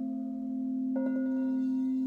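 Quartz crystal singing bowls: one steady, pure low tone sounding throughout with a slow waver, and about a second in a mallet strikes a bowl, adding a higher ringing tone over it.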